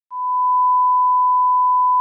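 A single steady electronic beep, one pure unchanging tone that starts just after the beginning and holds.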